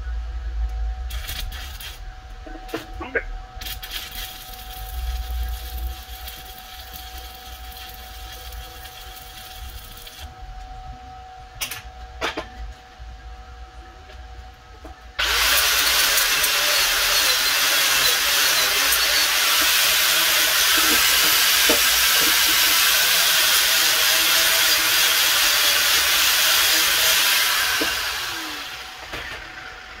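Stick-welding arc, likely from a 7018 electrode on a Titanium Unlimited 200 welder. It strikes suddenly about halfway through, burns steadily and loudly for about twelve seconds as a weld bead is run, then fades out as the rod is pulled away. Before it there are only quieter scattered clicks and knocks.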